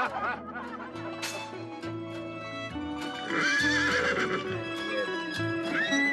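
A horse whinnying over background music: one long wavering whinny about three seconds in and a shorter one near the end.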